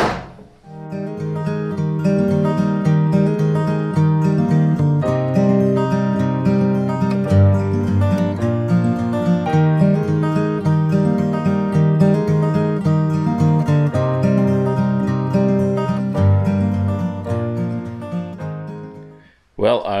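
Background acoustic guitar music, starting about a second in and fading out near the end.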